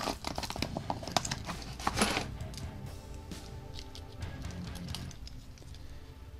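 Paper envelope rustling and small metal pieces clicking as they are handled, for about the first two seconds. After that, faint background music with steady held notes.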